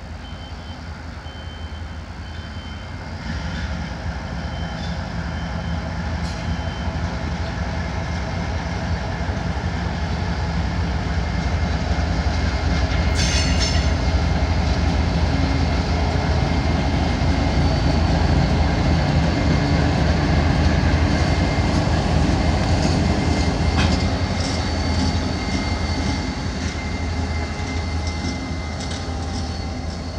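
CSX diesel locomotives rolling past, their engines running steadily. The sound builds as they come near, is loudest in the middle, and eases off toward the end, with a brief sharp high sound about halfway through.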